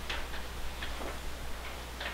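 Faint, irregular light clicks, about two or three a second, over a steady low hum.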